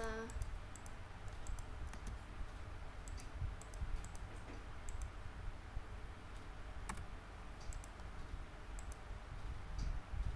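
Computer keyboard being typed on: light, irregular key clicks, about two a second with short pauses, over a steady low hum.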